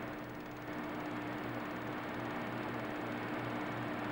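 Steady low electrical hum with a faint even hiss, the background noise of the narration recording. The 8mm film itself carries no sound.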